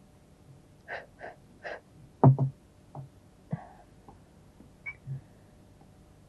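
A woman's hands tidying a table: glasses and objects knocked and set down on the tabletop, with soft rustling first. The loudest is a double thud a little over two seconds in, and there is a brief light clink near the end.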